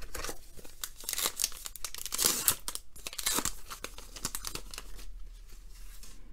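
A baseball card pack's wrapper being torn open and crinkled by hand, a dense crackling that dies down after about three and a half seconds into lighter handling noise.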